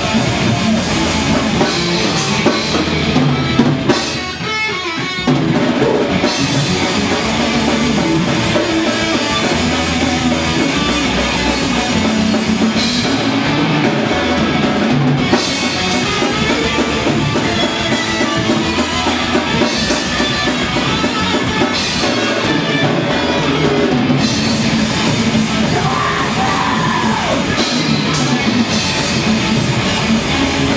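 A heavy metal band playing live and loud: electric guitars, bass guitar and drum kit. About four seconds in, the low end drops out for about a second before the full band comes back in.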